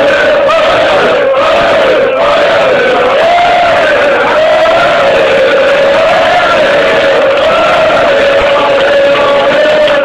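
Massed football supporters chanting in unison, loud and without a break, one drawn-out sung line that rises and falls gently in pitch.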